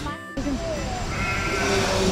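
Sheep bleating, with one long, drawn-out bleat in the second half, over background music.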